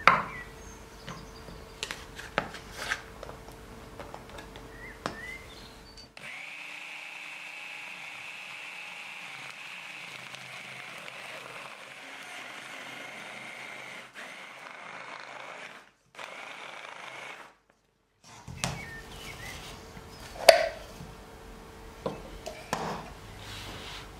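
Small electric mini chopper's motor running steadily for about twelve seconds, blitzing chilled butter cubes into flour, with two brief stops near the end of the run. Before and after it come sharp plastic-and-wood knocks, the loudest at the very start and another about twenty seconds in.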